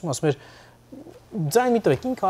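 A man's voice speaking, with a pause of about a second in the middle.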